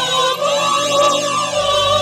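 Church choir singing held notes, with a swirling, phasey sweep running through the whole sound.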